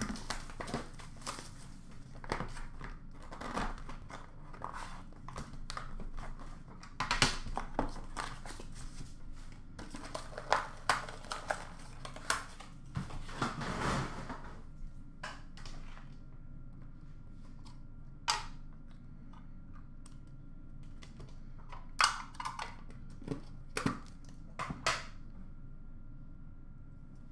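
A cardboard box being opened and unpacked by hand: crinkling and rustling packaging, with scrapes, knocks and clicks as boxes and cards are handled. The noise is dense for about the first fifteen seconds, then thins to scattered taps and clicks.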